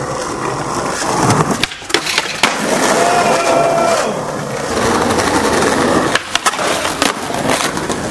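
Skateboard wheels rolling over rough pavement, with several sharp clacks of the board hitting the ground, a cluster of them near the end.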